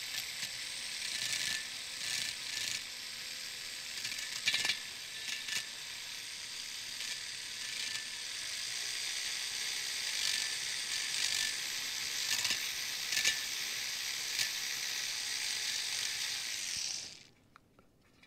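Flexible-shaft rotary tool spinning a small burr against the port edges of a two-stroke cylinder bore, chamfering them: a steady high whine with scattered ticks. It cuts off about a second before the end.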